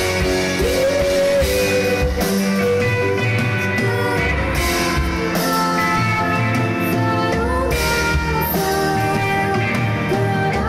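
Live rock band playing loudly and steadily: electric guitar, keyboard and a TAMA drum kit, with long held notes that glide up or down in pitch a few times.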